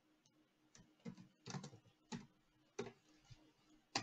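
Faint computer keyboard typing: about six separate keystrokes, irregularly spaced, as a short command line is typed.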